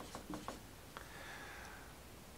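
Faint dry-erase marker strokes on a whiteboard: a few short scratches in the first half second, then little more than room tone.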